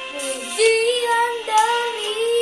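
A boy singing an Indonesian worship song over a backing track, his voice coming in about half a second in with held, gliding notes.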